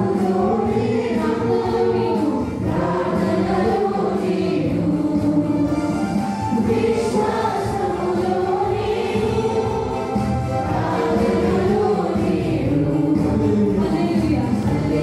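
A mixed youth choir of women and men singing a Telugu Christian song together with keyboard accompaniment, voices amplified through microphones and a church sound system.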